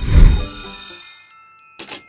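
Post-production transition sound effect: a bright, shimmering chime over a deep bass hit that fades away within about a second. A few short typewriter-style clicks follow near the end as text types onto the screen.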